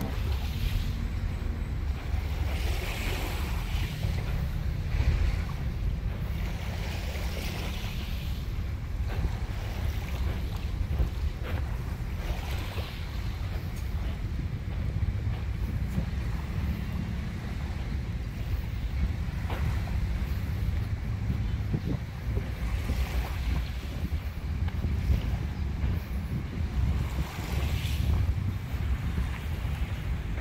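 Wind blowing across the microphone with a steady low rumble, and small waves washing onto a sand beach, their hiss coming and going every few seconds.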